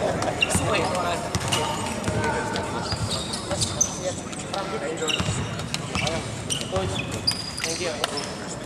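Basketball shoes squeaking in short, repeated chirps on a hardwood court, with a basketball bouncing and sharp knocks among them, over the chatter of players' voices in a large gym.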